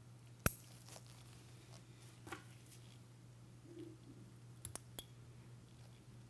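A few sharp clicks of metal surgical instruments, a needle holder and forceps, being handled over a steady low hum. The loudest click comes about half a second in, with smaller ones near two seconds and near five seconds.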